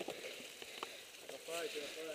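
A low-level lull with a faint voice speaking briefly near the end and a couple of small clicks.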